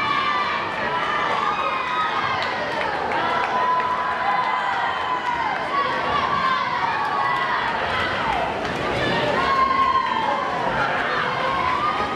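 Swim-meet crowd of teammates and spectators shouting and cheering on swimmers, many voices overlapping in long, falling yells, echoing in an indoor pool hall.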